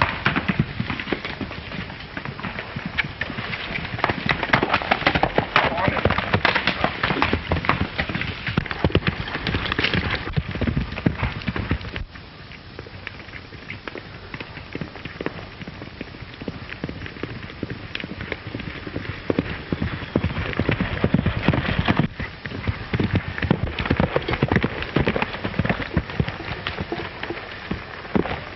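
Horse hoofbeats at a gallop, a fast run of knocks on hard ground. They drop away about twelve seconds in and come back louder about ten seconds later.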